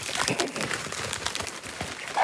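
Plastic packaging crinkling and rustling as it is handled, in quick irregular crackles.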